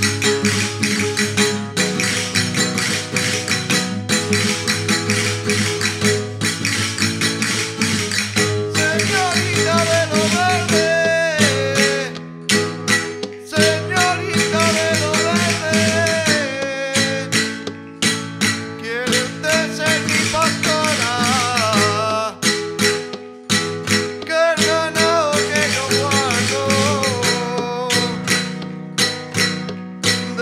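Live chacarra folk music: acoustic guitars strumming a steady dance rhythm, with a voice singing the melody from about nine seconds in.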